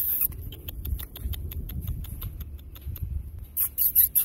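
A puppy crunching a hard dog biscuit: a quick, even run of small crunches, about six a second, with a louder burst of crunching near the end.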